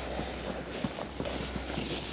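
Footsteps on packed snow: a run of irregular short steps, with a sled being pulled over the snow.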